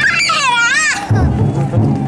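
A high, wavering chant call for about a second, then the chousa drum float's big taiko drum beats starting up again in a steady, quick rhythm.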